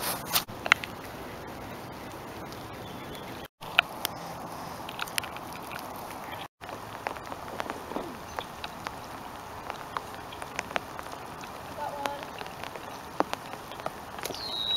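Light rain falling, a steady hiss with scattered sharp ticks of drops landing close by. The sound cuts out completely twice, briefly.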